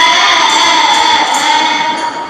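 A group of schoolgirls singing together in chorus into a microphone, holding one long, slightly wavering note.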